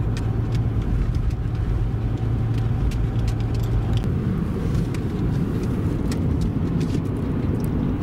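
Steady road and engine noise inside a moving car's cabin, a low rumble with a steady hum that fades about four seconds in.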